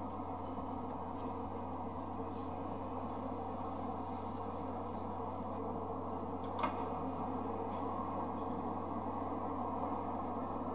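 Steady, muffled background noise with a constant low hum, the soundtrack of an old home video played through a TV speaker and re-recorded; a single short click about six and a half seconds in.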